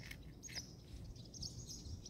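Birds chirping faintly in short, high, repeated chirps over low outdoor background noise.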